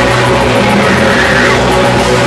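Live grindcore band playing very loud, distorted music in a dense, unbroken mass of noise.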